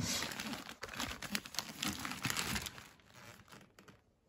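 Gift wrapping paper crinkling and tearing in quick, dense crackles as a wrapped present is handled and opened, fading away after about three seconds.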